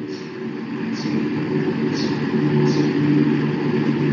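A steady low hum, like a running vehicle engine, with several held low tones and a few faint high hissy pulses about once a second, carried over an open voice-chat microphone.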